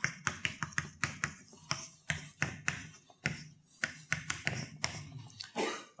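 Chalk writing on a blackboard: a quick, irregular run of sharp taps and short scratches, several strokes a second, as letters are chalked.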